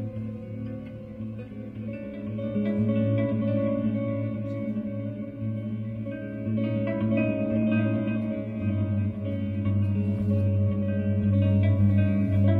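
Solo electric guitar playing slow, long-held ringing notes over a steady low bass note, the harmony shifting every few seconds.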